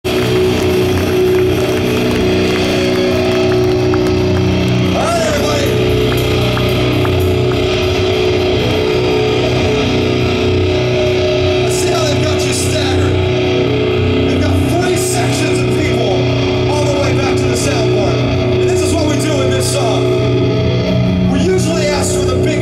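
Live rock band playing through a large outdoor PA: held, droning chords with a man's voice calling out over them into the microphone, and cymbal crashes joining in from about halfway through.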